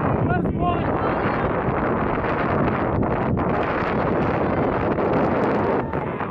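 Wind buffeting the microphone, a steady rushing noise, with players' shouts from the field briefly about half a second in.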